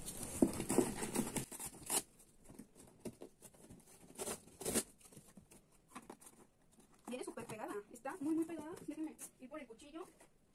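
Packing tape being peeled and torn off the top of a cardboard shipping box, with sharp ripping sounds about two seconds in and again near the middle, and the cardboard rustling under the hands. A faint voice is heard in the last few seconds.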